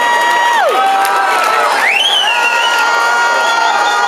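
Concert audience cheering, with long held whoops over the crowd noise. One whoop drops away in pitch under a second in, and another rises sharply about two seconds in.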